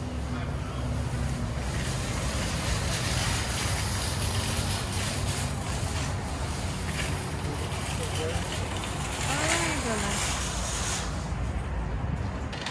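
Outdoor parking-lot ambience: steady wind and traffic noise with a deep rumble on the microphone, and a brief voice in the background about nine to ten seconds in.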